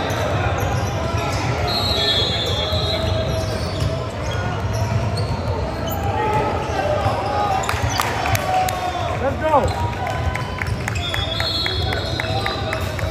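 A basketball bouncing on a hardwood gym floor among players' and spectators' voices, echoing in a large gym. Near the end it is dribbled in a steady run of bounces, about three a second.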